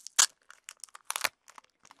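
Clear plastic cello sleeve crinkling and crackling as fingers pick open its flap, with a sharp crackle just after the start and a dense burst about a second in.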